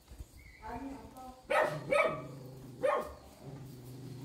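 A dog barking twice, a little over a second apart, with softer whining before the barks.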